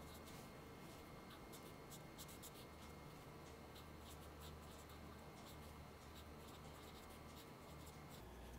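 Faint scratching of a marker pen writing on paper, in many quick short strokes.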